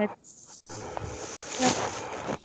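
Buzzing, hissy noise from a video call's audio that cuts out sharply several times, with a faint broken voice coming through after the last cut: the call's sound is breaking up over a poor connection.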